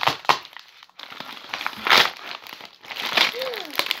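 White paper wrapping crinkling and rustling as a homemade package is pulled open by hand, with a burst of louder rustling about two seconds in.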